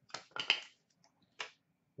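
Hockey trading cards being slid out of a pack and shuffled in the hands: three short dry swishes, the second the longest and loudest.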